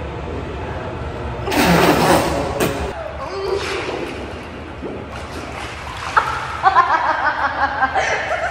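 Pool water splashing loudly about a second and a half in as two people duck under the surface, then lighter sloshing, and a person laughing near the end.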